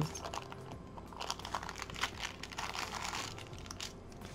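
A paper sheet rustling and crinkling as it is handled, with scattered light clicks.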